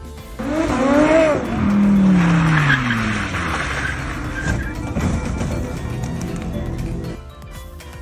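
A sports car's engine revving hard, its pitch climbing briefly and then falling away, as its tyres squeal in a sideways skid. The sound cuts off suddenly near the end.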